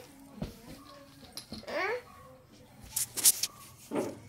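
A toddler vocalising without words, with a rising squeal about halfway through and a short sharp burst of noise a little after three seconds.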